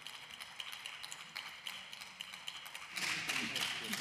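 Faint chamber room tone with a few light scattered taps, the tail of applause dying away. About three seconds in, a louder hiss comes up.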